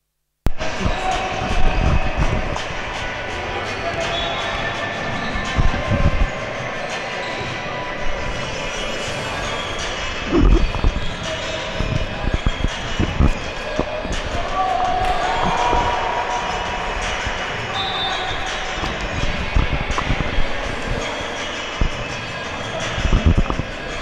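Basketball being dribbled and bounced on a hardwood indoor court, with irregular thumps over a steady din of indistinct voices echoing in the hall. The sound cuts in abruptly about half a second in.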